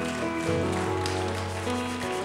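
Worship band playing a slow instrumental passage of long held chords, with a low bass note coming in about half a second in.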